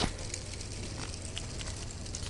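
Plastic K'nex gears of a small solar-motor buggy making faint, irregular clicks as it crawls uphill on its low-speed drive, over a steady low rumble.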